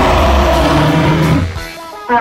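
A loud, deep rumbling sound effect over background music, dying away about a second and a half in.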